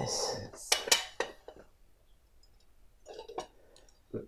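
Metal cake server clinking against ceramic plates as a slice of cake is served: a few sharp clinks about a second in and one more near the end.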